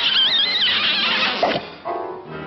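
A high, warbling cartoon animal vocal squeal that wobbles up and down in pitch for about half a second, followed by a short falling glide about halfway through, over an orchestral cartoon score.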